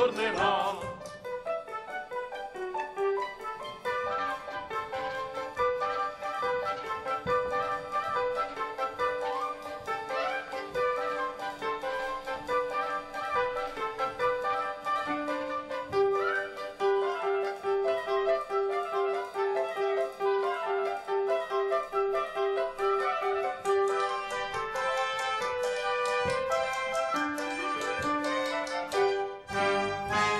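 Lively instrumental operetta dance music on a steady beat, with a run of quick, evenly repeated notes through the middle.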